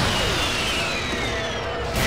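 Cartoon action sound effects: a long whine that falls slowly in pitch, as of the Goblin's damaged jet glider dropping away, over a low rumble from the explosion.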